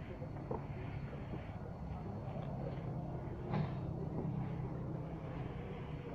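A steady low machine hum, with a sharp knock about three and a half seconds in.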